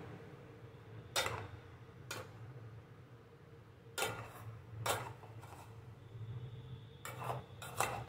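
A steel spoon clinking and scraping against the side of a metal pot as cooked rice is stirred and broken up: about six short, sharp clinks at uneven intervals, with soft scraping between them.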